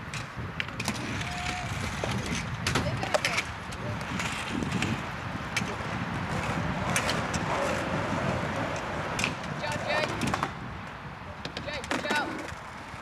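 Skatepark sound: scooter wheels rolling on tarmac and ramps with frequent sharp clacks and knocks, under children's voices and calls.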